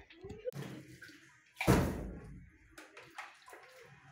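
Water from a bucket splashing onto a metal door, loudest in one brief rush about a second and a half in, with smaller splashes and sloshing around it.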